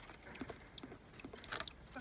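Faint scattered taps and clicks of small objects being handled, with two sharper ticks, one around the middle and one near the end.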